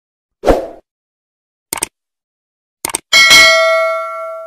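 Subscribe-button animation sound effects: a short thump, then two quick double clicks, then a bell ding about three seconds in that keeps ringing and slowly fades.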